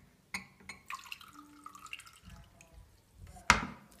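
Pink drink poured from one glass tumbler into another, trickling and dripping, with light clinks of glass on glass. Near the end a glass is knocked down sharply onto the tray.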